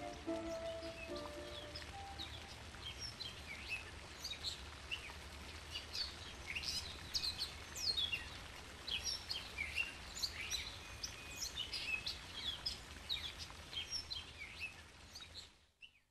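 Many small birds chirping and singing, quick short falling chirps over a faint steady background hiss, after a flute melody fades out in the first second or two. The sound cuts off just before the end.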